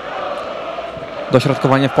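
Football crowd chanting, a steady blur of many voices across the stadium, with a man's commentary starting about a second and a half in.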